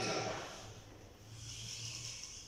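Quiet room tone in a pause between a preacher's phrases, with a faint steady low hum. The last word fades out at the start.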